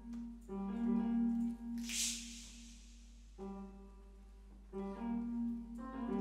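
Symphonic wind band playing a quiet, sparse passage: short low melodic phrases with pauses between them, and a brief hissing swell of high sound about two seconds in.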